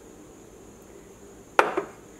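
A small glass bowl set down on a countertop: one sharp knock about one and a half seconds in, after a quiet stretch.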